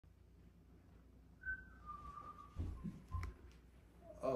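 A person whistling a few notes that step down in pitch: a short high note, a longer lower one, then a brief lower note. Two dull thumps come in the second half.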